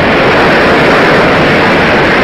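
An audience applauding, loud and steady.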